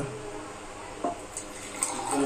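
Milk being poured from a steel pot into a steel tumbler, a quiet liquid splashing as it lands, with a light click about a second in.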